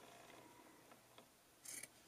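Mostly near silence, with faint scissors cutting through jersey-knit T-shirt fabric: a light click a little past halfway and a brief soft hiss near the end.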